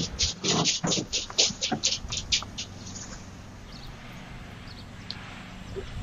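A rapid, regular run of short scratchy clicks, about three a second, from a Zebco spincast rod and reel being handled. The clicks stop about two and a half seconds in, leaving faint background.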